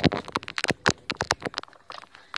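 Handling noise from a phone on a selfie stick: a quick, irregular run of clicks and knocks close to the microphone, thinning out near the end.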